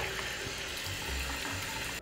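Water running steadily from a tap as hands are washed under it, stopping suddenly at the end.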